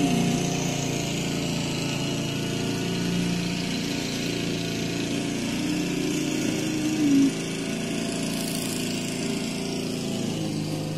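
Lawn mower engine running steadily, briefly louder with a higher tone about seven seconds in.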